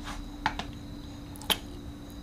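Computer mouse clicks: two light clicks about half a second in and a sharper click about a second and a half in, over a faint steady hum.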